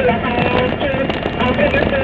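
Steady engine and road noise from a vehicle driving along a road, with wind buffeting the microphone and voices in the background.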